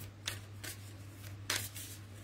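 Oracle cards being shuffled and handled by hand: a few soft, brief rustles, the most distinct about a second and a half in, over a low steady hum.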